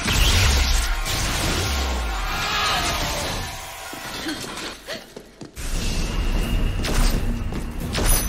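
Action-film soundtrack: dramatic score mixed with loud crashing and shattering effects and a deep rumble. It thins out to a brief lull about five seconds in, then the music and effects come back.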